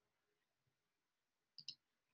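Near-silent room tone, broken about one and a half seconds in by two quick sharp clicks close together.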